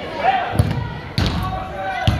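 A soccer ball kicked twice on artificial turf in a large indoor hall, two sharp thuds about half a second apart, over players and spectators shouting.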